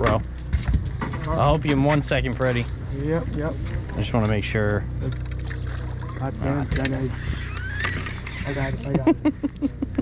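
Men's voices talking and laughing over the steady low hum of a fishing boat's engine running.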